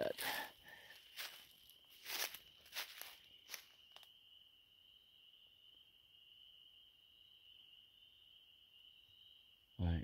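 Footsteps and branches crackling and rustling as someone pushes through dense brush, several sharp bursts in the first four seconds, then only faint movement. A steady high thin trill of night insects runs underneath throughout.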